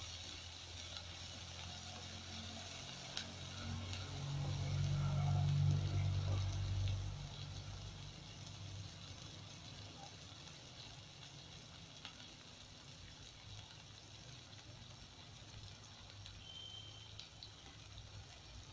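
Chopped onion, garlic and green capsicum sizzling in hot oil in a non-stick kadhai, with a spatula stirring at first. A low rumble swells about four to seven seconds in, then the sizzle carries on steadily.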